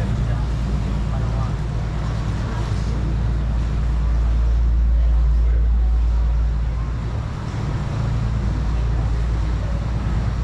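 Canal tour boat's motor running with a steady low drone, heard on board inside the brick vault under a bridge. It swells around the middle and dips briefly about three quarters of the way through.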